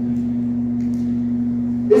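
A steady low hum, one unchanging tone with a fainter tone beneath it, held without a break; a word of speech starts right at the end.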